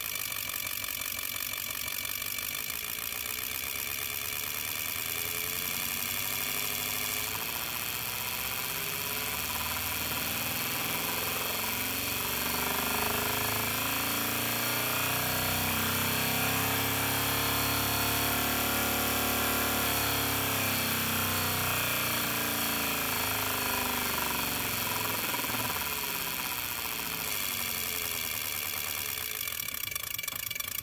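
A bench ignition rig running: an HEI distributor is spun by its drive and fires a row of open spark plugs. The running pitch rises steadily for about ten seconds as the speed is slowly ramped toward about 2500 rpm, then falls back near the end.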